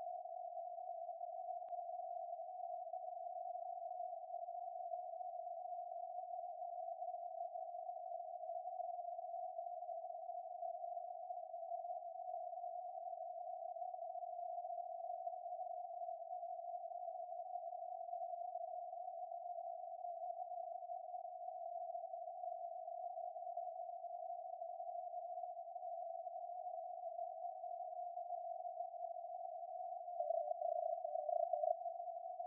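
Receiver audio from a SunSDR2 DX HF transceiver tuned to the 20-metre CW band, heard through a narrow CW filter: a steady hiss of band noise confined to a narrow pitch around 700 Hz, with no distinct Morse keying standing out.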